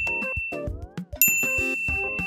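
A bright, bell-like ding sound effect rings and fades, then is struck again about a second in, over light background music with short, clipped notes.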